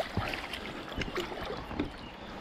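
Shallow stream water splashing and sloshing in irregular small splashes as a hooked trout thrashes at the surface while it is drawn to a landing net.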